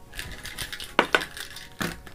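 Small plastic marker-pen caps dropped and clattering onto paper on a tabletop: a few light clicks, the sharpest about a second in and again near the end.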